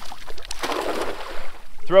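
A thrown cast net landing on shallow water: the weighted net spreads and hits the surface with a splashing hiss that starts about half a second in and lasts about a second.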